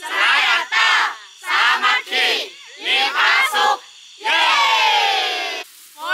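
A group of people shouting a slogan together, with raised fists: a run of short shouts, then one long drawn-out shout about four seconds in.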